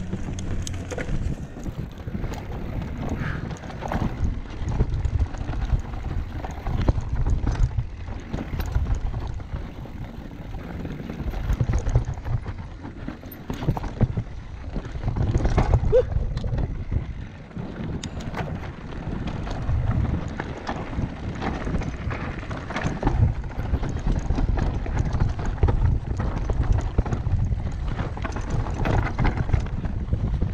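Mountain bike ridden down a rough, rocky trail: steady wind buffeting on the helmet camera's microphone, swelling and dropping with speed, over tyres on dirt and stones and the bike rattling and knocking across bumps.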